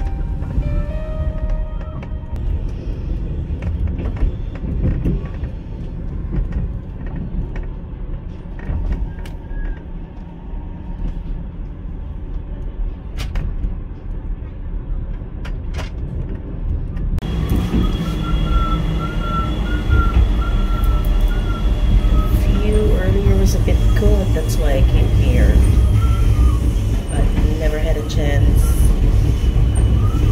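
Sleeper train running on the rails, a steady low rumble from the moving carriage. About seventeen seconds in the sound cuts to a louder, fuller rumble with sustained high tones over it.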